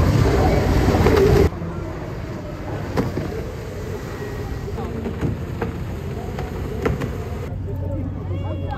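Loud rushing outdoor noise that cuts off abruptly about a second and a half in, followed by a quieter background with faint distant voices and a few sharp clicks.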